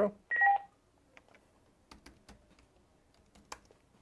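A short two-tone electronic beep from the computer about a third of a second in, followed by a few faint, scattered keyboard clicks.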